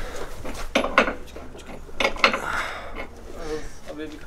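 Several light metallic clicks and knocks, two near one second in and two just after two seconds, as hands turn the Nissan S14's front wheel and suspension toward full steering lock, over a low steady hum.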